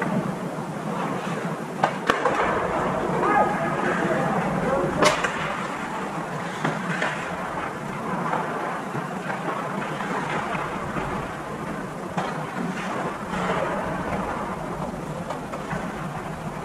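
Ice hockey play heard from across the rink: skates scraping the ice under a steady wash of arena noise, with sharp stick-and-puck clacks, one near two seconds in and a louder one about five seconds in, and players' distant calls.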